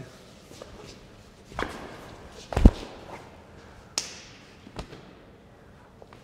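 Dress shoes stepping and stamping on a tiled floor during knife-sparring footwork: a few scattered steps, the loudest a thud about two and a half seconds in, and a sharp scuff with a short hiss about four seconds in.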